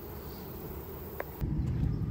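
Honey bees buzzing around an open hive; about a second and a half in, the sound switches abruptly to the louder low rumble of a zero-turn mower's engine running.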